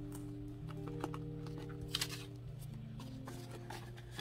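Quiet background music of soft held chords that change a little after halfway. A few faint clicks and rustles come from a plastic zip pouch in a cash binder being handled.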